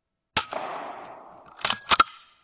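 A Weihrauch HW100 .22 air rifle firing once, a sharp crack with a ringing tail that fades over about a second, followed near the end by two sharp mechanical clacks.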